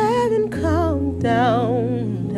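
A woman's voice humming or singing wordlessly in drawn-out notes with a wide vibrato, a new phrase beginning about half a second in, over steady low sustained accompanying tones.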